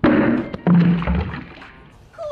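A yellow cup dropped onto concrete paving: a sudden clattering hit, then a second thud about two-thirds of a second later as it lands again.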